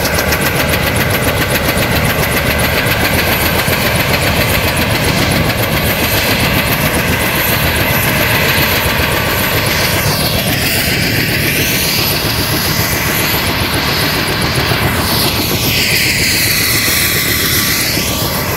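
Helicopter running on the ground with its main rotor turning: a loud, steady turbine and rotor din with a rapid blade chop. The noise sweeps in pitch around the middle and again near the end.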